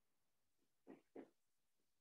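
Near silence broken by two short squeaks of a felt-tip marker stroking across a whiteboard, about a second in and a quarter second apart.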